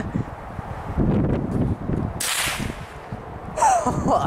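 A single shot from a 1915 Remington No. 4S rolling-block .22 rimfire rifle: one brief report with a sudden start, about two seconds in.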